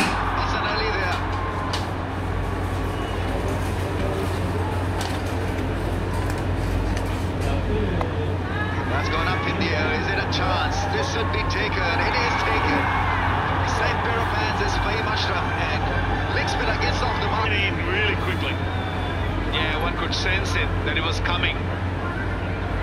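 Cricket stadium crowd noise, a steady din of many voices with scattered shouts and indistinct talk, over a constant low hum.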